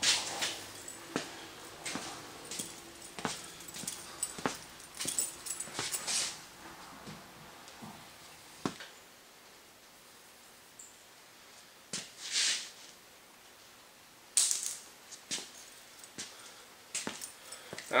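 Scattered metal clicks, knocks and scrapes as the steel hinge bar holding a trailer's loading ramps is worked loose and slid out, with two longer scraping sounds in the second half.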